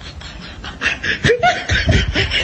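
Laughter in quick repeated bursts, quieter at first and much louder from about a second in.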